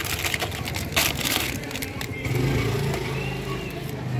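Dry biscuits being snapped and crumbled by hand into a plastic tub: a run of dry crackles and snaps, with one louder snap about a second in. A low hum comes in during the second half.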